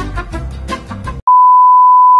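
Swing-style brass band music that cuts off suddenly just over a second in. It is followed by a loud, steady, single-pitched test-card beep, the tone that goes with a 'please stand by' screen.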